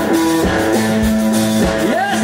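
A live blues-rock band playing: electric guitar holding long notes, with a note bending upward near the end, over electric bass and drum kit hits.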